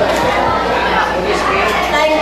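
People talking amid crowd chatter in a large hall, over a steady low hum.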